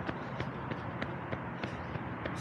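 A runner's footfalls on pavement at a steady running cadence, about three a second, over a steady low rumble.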